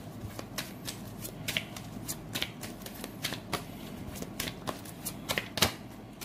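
Tarot cards being shuffled by hand, a steady run of quick, irregular card clicks and slaps.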